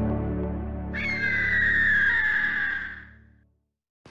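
Intro music with sustained low chords fading out, overlaid about a second in by a long, slightly falling bird-of-prey screech sound effect. Both die away to silence shortly before the end.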